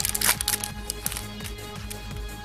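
Foil booster-pack wrapper crinkling as it is pulled open, loudest in the first moment. Then steady background music with held tones.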